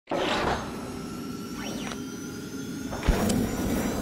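Sound design of an animated channel-logo intro: a swell at the start, a quick pitch sweep up and down midway, and a deep hit about three seconds in.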